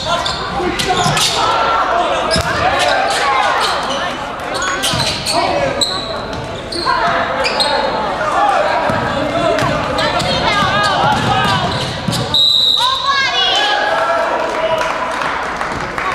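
Basketball game in a gym: ball dribbling and bouncing, sneakers squeaking on the hardwood, and players and spectators shouting, with the hall ringing. About twelve seconds in, a referee's whistle blows once, briefly, to stop play.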